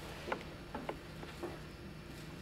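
A handful of light, separate clicks and taps over a low room hum, about five in the first second and a half.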